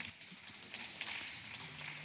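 Faint, irregular clicking and knocking over a light hiss, with no speech.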